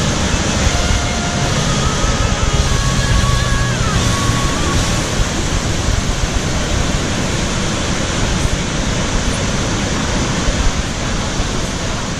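Steady roar of a large waterfall, a loud rushing noise, with faint held notes of a song underneath for the first few seconds.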